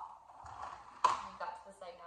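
Hard plastic parts of a baby walker being handled, with one sharp click about a second in.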